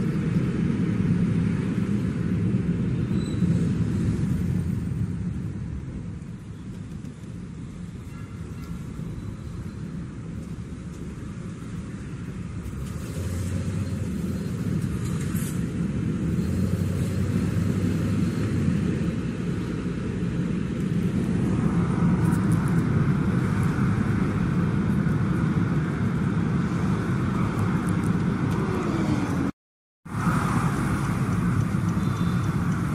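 Road noise heard from inside a taxi's cabin: the car's engine and tyres running in city traffic, a steady low rumble. It eases off for several seconds about a fifth of the way in, then builds again. The sound cuts out briefly just before the end.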